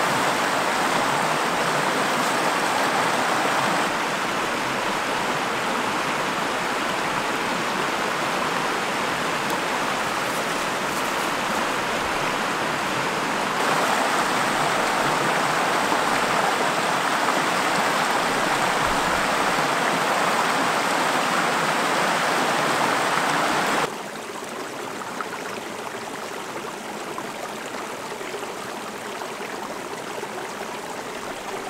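Shallow mountain river rushing over rocks in rapids, a steady, full rush of water. About 24 s in it drops to a quieter, steady water sound.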